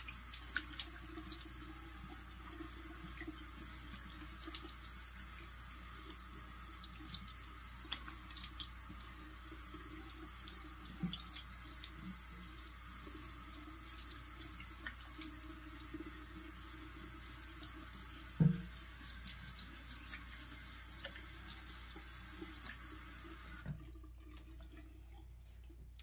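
Bathroom sink tap running steadily while water is splashed up onto the face to rinse off a scrub, with small splashes and drips throughout and one louder thump about two-thirds of the way through. The running water stops a couple of seconds before the end.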